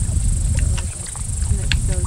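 Low rumbling wind noise on an outdoor microphone, with a woman's quiet voice and a short laugh near the end.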